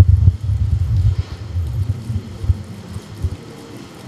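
Low rumble and soft thumps from a handheld microphone being held and shifted in the hands, loudest in the first second or so and fading off.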